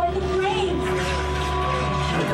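Simulator ride soundtrack: voices over music, with a steady low rumble underneath.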